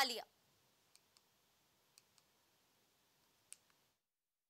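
A woman's narration ends on its last word, then near silence broken by five faint, sharp clicks: two pairs about a second apart and a slightly louder single click near the end.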